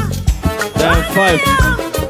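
Live highlife band music: drum kit, bass guitar and keyboards, with a high melody line that slides up and down in pitch.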